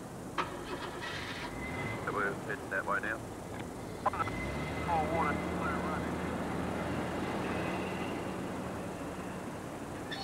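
A car engine starting about four seconds in, then running steadily at idle, preceded by a few short vocal sounds and clicks.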